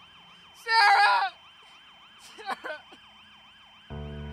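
A distant emergency-vehicle siren sounds faintly in a fast rising-and-falling yelp, three to four cycles a second. About a second in, a loud anguished cry breaks out over it, followed by smaller sobs. Soft sustained music comes in near the end.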